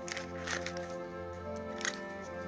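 Soft background music with steady held notes, over a few light clicks and rustles as a small leather coin purse is opened and a metal key is drawn out of it, the sharpest click near the end.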